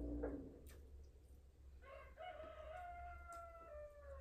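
A rooster crows once: a single drawn-out call of about two seconds, starting about halfway in. Just after the start, a steady hum cuts off.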